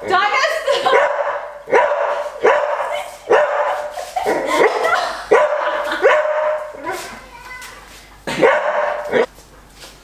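A dog barking repeatedly, about one bark a second, with a short lull about seven seconds in.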